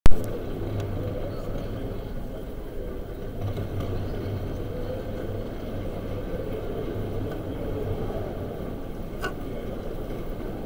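Indistinct murmur of people talking amid a steady low rumble of room noise, with a sharp thump at the very start and a small click near the end.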